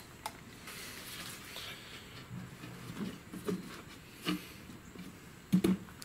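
A few soft, short handling knocks and rustles over a faint steady hiss, the last and loudest pair near the end: foam pieces being handled and set down on a wooden workbench.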